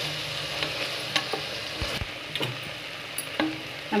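Chopped vegetables and spice powder sizzling in an aluminium pressure cooker pot while being stirred with a spatula. Through the steady frying, the spatula scrapes and knocks against the pot several times.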